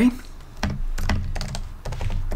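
Typing on an Apple Magic Keyboard: a quick run of separate key clicks as a line of code is entered.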